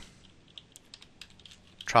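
Computer keyboard being typed on: a quick run of faint key clicks as a short word is entered into a search box.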